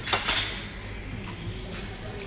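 A spoon and fork scraping and scooping rice on a plate, with one short, loud scrape in the first half-second, then only quieter background.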